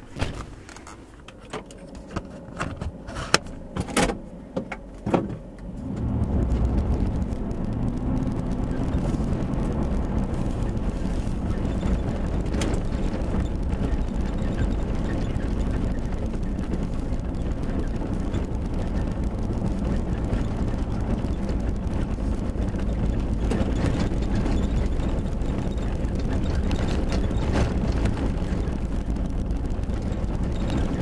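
Cab noise of a two-wheel-drive Nissan Titan pickup with its 5.6-litre V8: a few sharp knocks and clicks in the first five seconds, then about six seconds in the truck pulls away and the engine and tyres settle into a steady low rumble as it drives down a rough dirt track.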